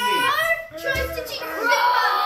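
Young children's high-pitched voices calling out and making play noises without clear words, with a low thump about halfway through.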